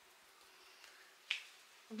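A single short, sharp click a little over a second in, in an otherwise quiet pause.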